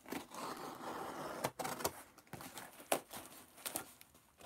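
Craft knife blade cutting along the packing tape on a cardboard box's centre seam. A rasping scrape for about the first second and a half, then several short, sharp scratches and clicks as the blade works along the tape.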